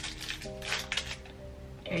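Background music with steady held notes, over which a foil chocolate wrapper gives a few light crackles as it is peeled open, about half a second to a second in.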